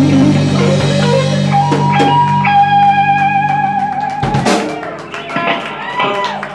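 Live blues band of electric guitars, bass guitar and drum kit playing the close of a song: a long held guitar note over sustained bass notes, then a final loud hit about four and a half seconds in, after which the sound dies away with a few scattered drum and cymbal taps.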